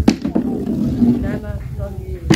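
People's voices talking over a steady low rumble, with two sharp knocks near the start.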